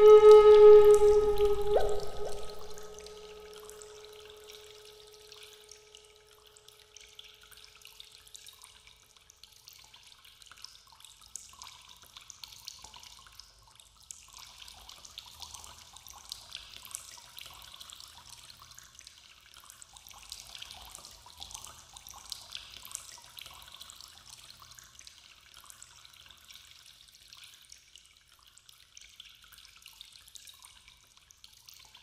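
A held woodwind note from the background music dips slightly in pitch about two seconds in and fades away, leaving a faint, irregular trickling and dripping of water for the rest.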